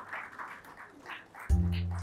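A small audience applauds lightly. About one and a half seconds in, a music track cuts in suddenly and loudly over it, built on a deep, sustained bass note.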